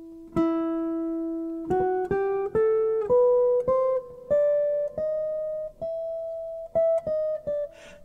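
Archtop jazz guitar playing the E bebop harmonic minor scale note by note: a held low E, then single notes stepping up about one per half second to the E an octave higher, with a few quicker notes near the end.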